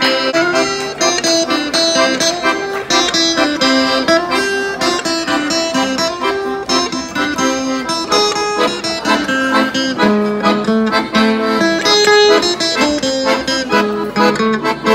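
Accordion and strummed acoustic guitar playing a lively tune together, the accordion carrying a melody of quick, held reedy notes over the guitar's regular strumming.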